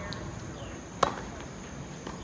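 A single sharp pock of a tennis ball impact about halfway through, a ball hit by a racket or bounced on the hard court.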